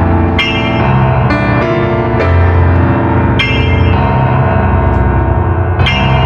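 Yamaha digital piano playing a slow piece: chords struck every second or so over a held low bass note.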